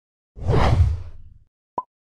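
Whoosh sound effect of an animated logo sting, lasting about a second and fading out, followed by one short blip near the end.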